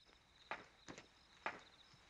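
Faint footsteps, three hard-soled steps on flagstone paving, with crickets chirping faintly.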